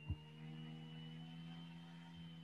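Faint steady hum made of several held tones, with a brief low thump just after the start.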